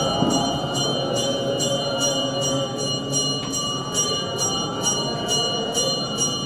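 A group of male clergy singing liturgical chant together, accompanied by metal sistra shaken in a steady rhythm of about two to three jingles a second.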